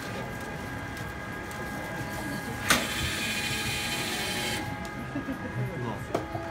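Latte art printer's print head carriage moving over the coffee foam as it prints: steady mechanical running with a sharp click just under three seconds in, then a brighter, higher-pitched whir for about two seconds.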